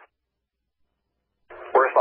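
Fire radio scanner audio: dead silence while no one is transmitting, then about one and a half seconds in a transmission keys up with a brief hiss and a voice begins speaking over the radio.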